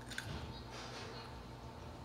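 A pickle being chewed, faint and wet, with a couple of short soft crunches in the first second.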